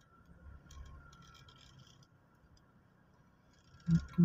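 Faint low rumble inside a slowly moving car, swelling briefly about a second in, with a few light ticks at the same time.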